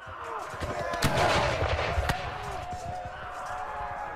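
Battle sound effects of a re-enacted fight: musket fire with sharp cracks about one and two seconds in, over a din of shouting men.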